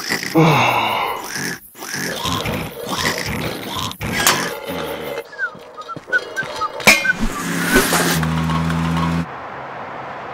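Cartoon soundtrack of wordless character vocals, a cry and grunting noises from a cartoon larva, mixed with music and sound effects. A steady low tone is held for about a second near the end.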